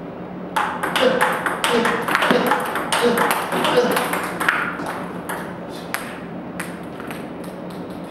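Table tennis balls clicking off bats and the table in a multi-ball drill: balls fed in quick succession and struck back. The clicks start about half a second in and thin out towards the end.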